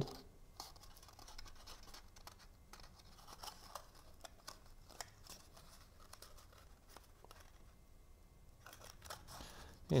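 Faint, scattered rustles and small scratches of cardstock being handled and pressed between the fingers while freshly glued tabs are held in place.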